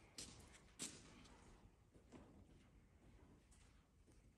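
Near silence: faint room tone with a few soft, brief taps in the first second or two.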